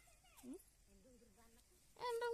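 A single short animal yelp about half a second in, sweeping sharply down in pitch and turning back up, over faint distant voices.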